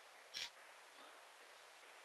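Near silence: faint room tone and hiss, broken by one brief short noise about half a second in.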